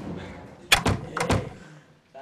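A quick run of about five sharp knocks and thuds, a little under a second into the sound, over a low rustling noise, like a door banging and clattering.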